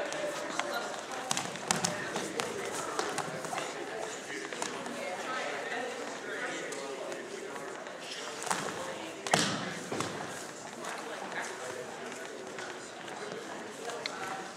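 Voices calling out from around a wrestling mat while two wrestlers scuffle, with thuds and slaps of bodies and feet on the mat. There is a sharp, loud impact about nine seconds in.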